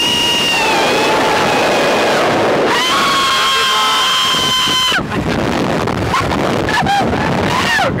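A woman screams two long, high held screams on the Slingshot reverse-bungee ride. The first trails off about a second in and the second runs from about three to five seconds. Wind rushes over the ride's camera microphone as the capsule flies.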